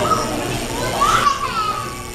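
Children's voices and chatter in a hall, with one high child's voice rising and falling about a second in.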